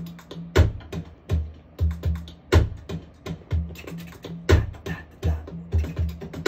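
A slow drum groove played back from a studio computer: deep low drum hits about once a second, with quick light hits packed between them. The small fast notes are added so that the slow tempo doesn't feel slow.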